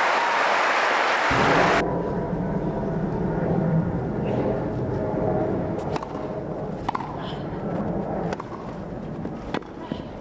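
Crowd applause that cuts off abruptly about two seconds in, followed by a low crowd hum and the sharp pops of a tennis ball struck by rackets in a baseline rally, several strikes about a second apart in the second half.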